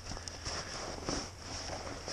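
Steady high buzzing of insects, with faint scuffs and rustles of someone shifting on sandy, gravelly ground.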